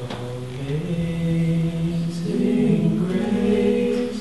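A small group of voices singing a slow hymn a cappella in harmony, with long held notes that change chord about a second in and again a little after two seconds.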